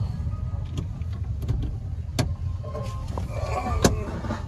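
Car cabin noise: a steady low rumble of engine and road heard from inside the car, with two sharp clicks, one about halfway through and one near the end.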